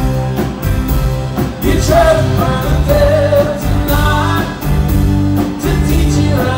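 Live rock band playing: electric guitars and bass over a steady drum-kit beat with cymbals, and a male lead vocal singing over it.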